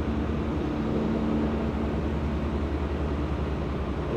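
Cab interior noise of a Kenworth semi-truck cruising on the highway: a steady low engine drone with road noise. A faint steady hum fades out about two-thirds of the way through.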